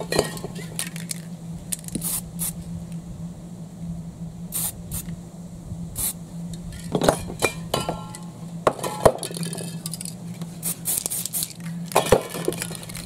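Aerosol spray-paint cans hissing in short bursts, with several sharp clinks and knocks as the cans and tools are handled, over a steady low hum.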